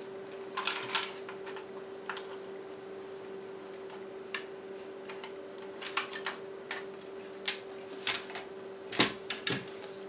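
Scattered clicks and light knocks of the Elecraft KX3 transceiver's case being pulled open by hand, with a cluster of clicks a few seconds from the end and a sharper click just before it ends. A faint steady hum runs underneath.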